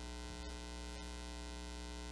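Steady electrical mains hum with a ladder of evenly spaced overtones, low in level; two faint clicks about half a second and a second in.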